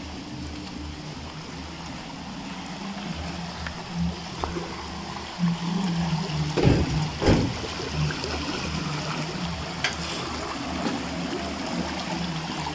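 River water flowing steadily, with faint background music with a low beat. Two loud short bumps come a little past halfway.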